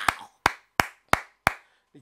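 One person clapping hands five times in a steady rhythm, about three claps a second, then stopping.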